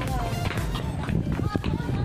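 Indistinct voices with music playing in the background, over a steady low hum.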